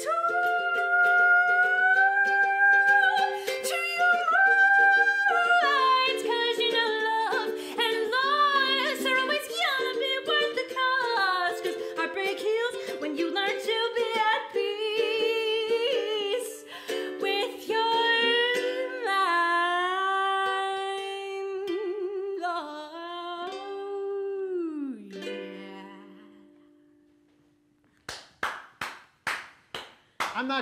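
A woman singing to her own ukulele accompaniment; the song ends about 25 seconds in on a last note that falls in pitch and fades out. Near the end come a few sharp claps.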